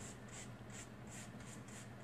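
Paintbrush dry-brushing chalk paint over a cardstock leaf cutout: faint, quick scratchy bristle strokes, about four a second.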